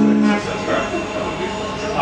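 A strummed guitar chord rings and is damped about half a second in, followed by indistinct chatter and room noise.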